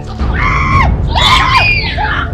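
A woman screaming twice, two high cries each under a second long, the second wavering in pitch, over steady background music.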